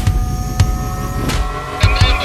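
A revving car-engine sound that rises steadily in pitch and cuts off sharply a little past halfway, over a thumping electronic music beat.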